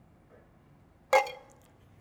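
A single sharp metallic clink of stainless steel kitchenware, about a second in, ringing briefly and fading; otherwise quiet room tone.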